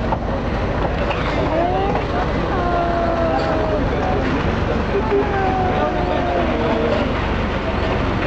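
Ferry's engine running with a steady low rumble, with people's voices talking over it through most of the clip.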